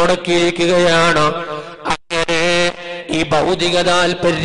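A man's voice chanting in long, drawn-out melodic notes, as in sung religious recitation, with a short break about halfway through.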